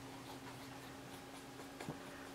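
Faint scraping and tapping of a thin stick stirring powder and alcohol into a paste in a mixing palette, with a slightly louder click near the end, over a low steady hum.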